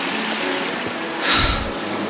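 Shallow mountain stream running over snow-covered rocks, a steady rushing. A soft low thump about one and a half seconds in.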